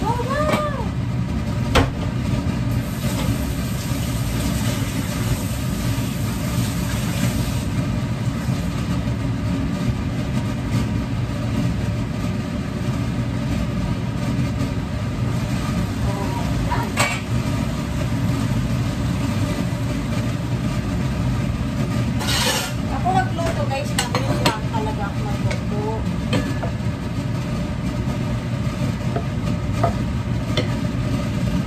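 Green beans and pork sizzling in a frying pan over a steady low hum. A few sharp clinks of a steel pot lid and cooking utensils come through, most of them about two-thirds of the way in.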